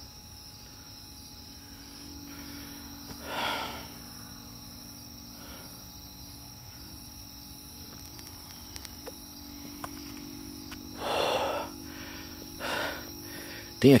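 Crickets chirring steadily in the night, with three brief soft whooshes close to the microphone, the first a few seconds in and two more near the end.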